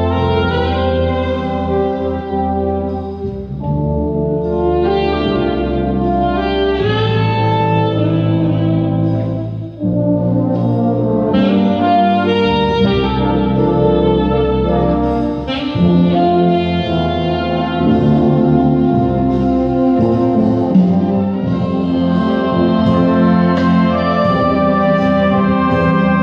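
Wind band of brass and saxophones playing sustained, full chords, in phrases with a brief break about ten seconds in.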